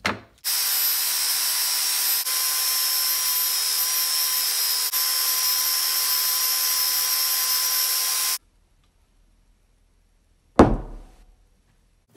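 Electric sander running steadily with a wooden piece held against it, with two momentary dips; it stops about eight seconds in. A single sharp thump follows a couple of seconds later.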